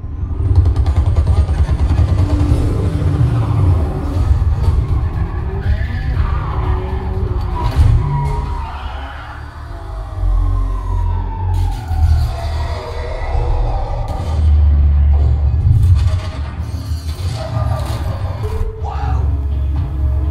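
Action-film trailer soundtrack played loud through the Creative SXFI Carrier Dolby Atmos soundbar and its 10-inch wireless subwoofer, recorded binaurally. Music with heavy, deep bass runs under the car-chase sounds of engines and skidding tyres.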